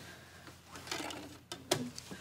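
Faint handling of a portable CD boombox, with one sharp click about one and a half seconds in.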